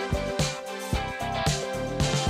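Music with a steady drum beat over held chords.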